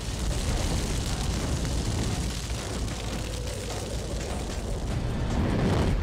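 Anime sound effect of a big fire blast or explosion: a continuous heavy rumble with a rushing noise over it, swelling near the end before it drops away.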